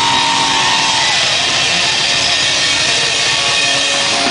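A live rock band playing loudly with distorted electric guitars. A held high guitar note bends downward about a second in, then gives way to a dense distorted wash of guitars.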